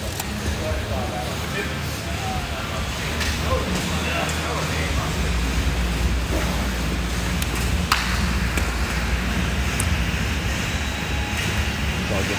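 Steady low rumble of room noise with faint voices in the background, and a single sharp click about eight seconds in.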